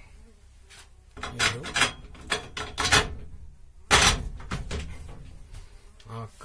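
A sheet-metal door in a steel frame being handled: a run of sharp knocks and rattles, the loudest about four seconds in.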